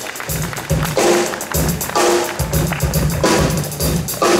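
Small jazz-fusion band playing live: drum kit with a repeating low bass figure under guitar and keyboard.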